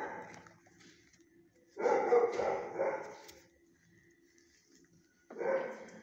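Dog barking in a shelter kennel: a short bark at the start, a louder run of several barks about two seconds in, and another bark about five and a half seconds in.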